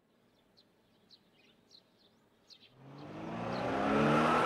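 Faint bird chirps, then from about three seconds in a truck engine approaching and growing steadily louder.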